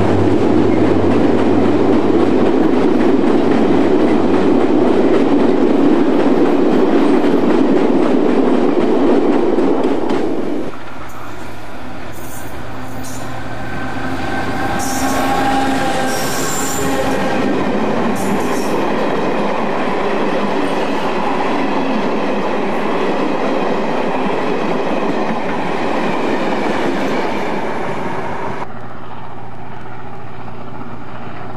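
Freight train of bulk cement tanker wagons rolling past, a loud steady rumble of wheels on rail. About ten seconds in this gives way to a passing passenger train, with several short high-pitched wheel squeals.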